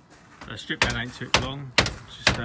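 A man talking, with a few sharp clicks in between.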